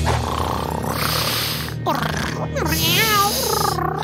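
Cartoon cat purring over background music. In the second half come a few short vocal sounds that rise and fall in pitch.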